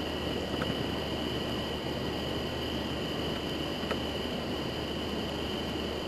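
Camcorder background noise, slowed to half speed: a steady hiss with a constant high-pitched whine and a low hum, and a few faint ticks.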